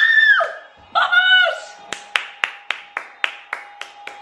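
A woman screams twice, high-pitched, then claps her hands about eight times in quick succession, the claps fading. A football fan celebrating a goal.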